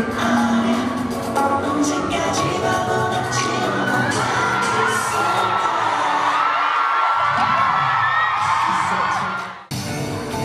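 Live pop music from an arena's sound system, with the crowd screaming and cheering over it. The bass drops away past the middle, and the sound breaks off abruptly near the end.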